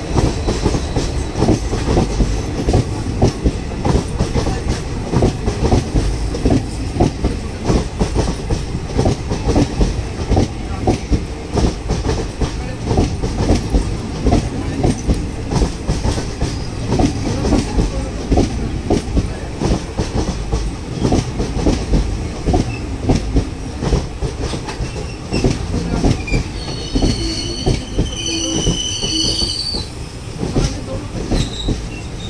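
Close-range rumble and rapid clatter of passenger coaches' wheels on the adjacent track as the two trains pass each other. A high wheel squeal comes in briefly near the end.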